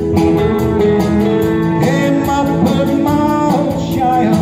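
Country song performed live: electric guitar and a man's singing voice over a steady drum beat.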